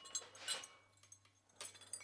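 Metal-tube wind chimes clinking faintly a few times as they are carried, each light strike leaving a thin ringing tone.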